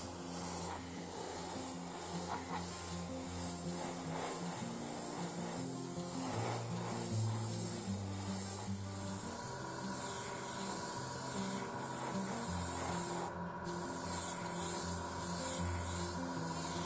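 Gravity-feed airbrush spraying acrylic paint: a hiss that swells and fades with each pass, stopping for a moment about thirteen seconds in. Background music plays underneath.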